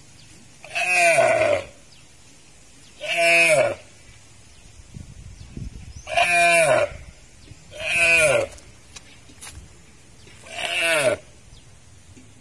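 A female deer calling five times, a couple of seconds apart; each call is short and falls in pitch.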